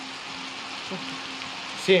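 Steady hiss with a faint low hum under it, ending in the start of a man's speech.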